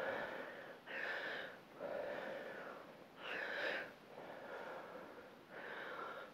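A woman breathing hard and audibly during a set of weighted reverse lunges, with a breath about every second.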